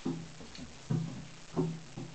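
Three hollow thumps on a bathtub, each followed by a short low ringing from the tub, as a cat jumps into it after a small ball.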